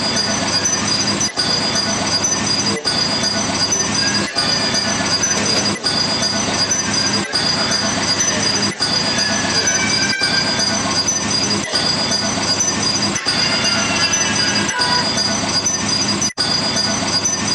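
Loud, dense noise-music collage with a steady high whine and faint wavering squeals. It cuts out for an instant about every second and a half, like a repeating loop.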